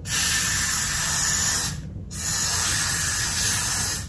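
Aerosol hairspray sprayed onto a wig cap in two long hissing bursts, with a short break between them about halfway through, to make the cap stick down around the edges.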